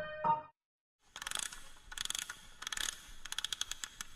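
The last notes of a piano tune die out in the first half second. About a second in, a ratcheting wind-up mechanism starts clicking in uneven runs, and the clicks come faster near the end.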